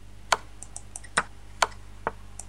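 Sharp clicks from chess moves being made quickly on a computer: three loud ones and a few fainter ones, irregularly spaced, over a faint steady hum.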